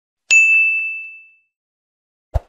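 A single bright ding, the notification-bell sound effect of an animated subscribe button, struck about a third of a second in and ringing out over about a second.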